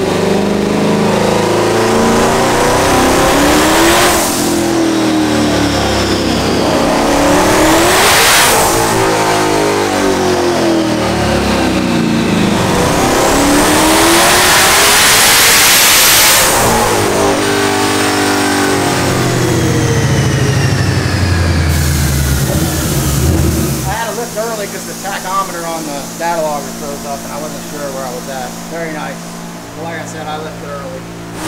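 The twin-turbocharged 5.2-litre Predator V8 of a 2020 Shelby GT500 revving hard on a chassis dyno at higher boost, in several full-throttle pulls. Its pitch climbs each time with a thin high whine rising alongside; the longest pull peaks near the middle. About 24 s in it drops back to a lower, quieter, steadier running.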